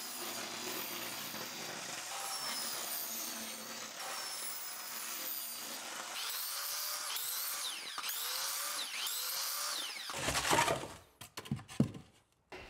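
Power saws cutting a 1½-inch Hydro-Blok foam building panel: first a table saw running through the board, then a miter saw whose blade whine rises and falls several times in the second half. The sound stops abruptly shortly before the end.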